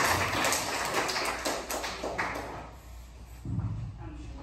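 Audience applause dying away over the first two or three seconds, followed by a low thud near the end.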